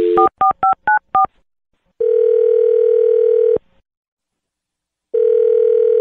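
Telephone line: a dial tone cuts off just as a quick run of about six touch-tone keypad beeps dials a number. Then come two long ringback tones, each about a second and a half, with silence between them, as the number rings at the other end.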